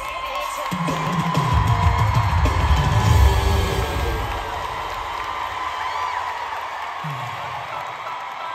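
Arena concert crowd cheering and whooping over loud amplified music. Heavy bass swells from about a second in, peaks around the middle, then eases, and a falling low sweep comes near the end.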